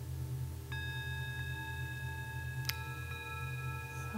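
A small meditation bell struck twice, about two seconds apart. Each strike leaves several clear tones ringing on over a low steady hum.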